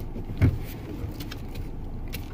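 Steady low rumble of a car idling, heard from inside the cabin, with a single thump about half a second in.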